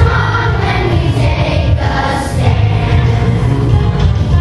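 Third-grade children's choir singing together in unison, steady and continuous.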